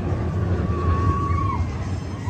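Outdoor amusement-park background noise: a steady low rumble with a faint thin held tone for about a second in the middle.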